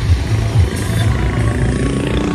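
A vehicle engine running close by.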